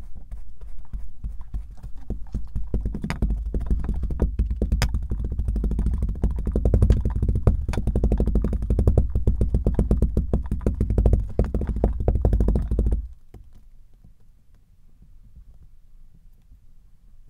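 Bamboo muddler pounding into kinetic sand packed in a glass: a fast run of dull, low thuds that grows denser and then cuts off suddenly about three seconds before the end.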